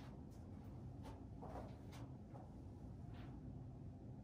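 Faint room tone with a few soft, scattered taps and rustles: hands and sneakers on a yoga mat as a person gets down into a downward dog position.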